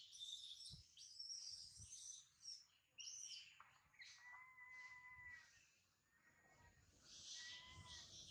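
Faint, high-pitched chirping calls over near silence, with thin steady whistle-like tones in the second half.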